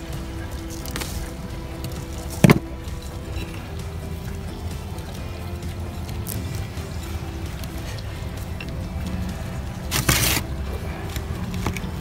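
Faint background music over a steady low rumble. Hands pressing and working potting soil in a clay pot give a sharp click about two and a half seconds in and a brief scraping rustle near the end.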